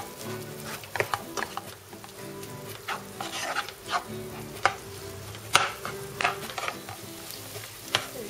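A wooden spoon scrapes and knocks against a non-stick frying pan at irregular intervals as minced meat and onion are stirred and pressed to break the mince into crumbs while it browns, over a faint sizzle of frying. The loudest scrape comes about five and a half seconds in.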